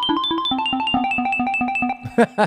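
A fast arpeggio of short keyboard notes, about seven a second, from a piano-roll clip arpeggiated by Ableton Live 12's Arpeggiate transformation. The notes step through a chord, the chord shifts lower about half a second in, and playback stops at the end.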